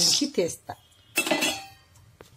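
Cashew nuts poured from a steel bowl into a steel kadai, clattering briefly against the pan just over a second in.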